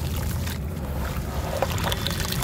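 Hands crumbling soft, dusty clay into a tub of water and working it in, making a steady watery swish with a few small crackles.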